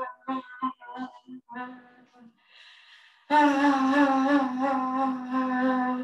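A woman vocalizing while swaying: a quick series of short voiced tones at one pitch, a faint breath, then one long held tone for the last few seconds. It is a labour vocalization used with side-to-side swaying to release the breath.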